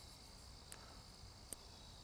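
Near silence: a faint, steady chorus of insects chirring, with two faint small clicks.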